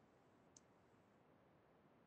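Near silence on an open conference-call line, with one faint click about half a second in.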